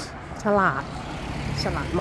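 A car driving past on a street, a steady low hum and rush under a woman's voice speaking Thai.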